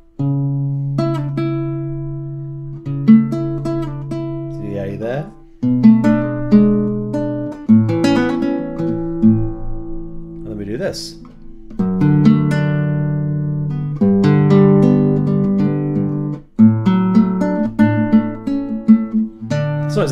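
Nylon-string classical guitar playing a baroque chaconne-style chord progression in D major. A held bass line runs under plucked chords and moving upper notes, each chord left to ring before the next.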